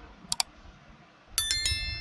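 Subscribe-button animation sound effects: a quick double mouse click, then about a second later a bright bell ding that rings on with several high tones.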